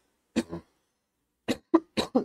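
A man coughing, sick with a sore throat. There is one cough about a third of a second in, then a quick run of three coughs near the end.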